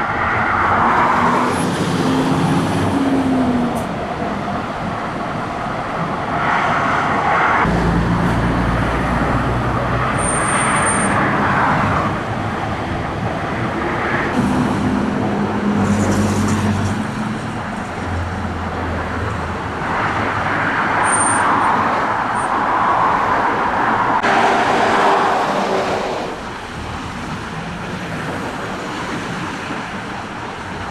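Highway traffic noise: a steady stream of cars and lorries going by, swelling and fading as vehicles pass, with a deeper engine rumble for a few seconds near the middle.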